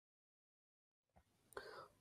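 Near silence, with a faint brief sound near the end just before speech resumes.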